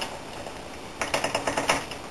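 Rapid metallic clicking of lock picks rattling in the plug of a TESA T60 euro cylinder as the rotor is jiggled, a quick run of about ten clicks in under a second near the end. The shaking is meant to make something caught inside the cylinder come loose.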